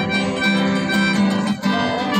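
An acoustic guitar and a mandolin strum a Christmas carol on a steady beat, with a held melody line sounding over the strumming.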